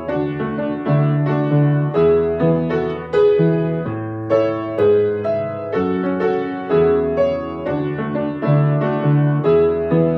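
Upright piano played solo: an instrumental passage of chords over bass notes, struck about twice a second.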